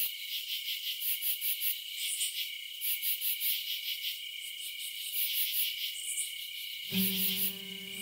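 High-pitched insect chirping, rapid and pulsing, like crickets. About seven seconds in, solo guitar music comes in over it.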